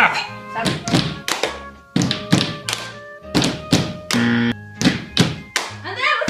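Hands slapping a tabletop and clapping in a steady rhythm of about three hits a second, keeping the beat of a rhythm card game. Sustained musical notes sound between the hits.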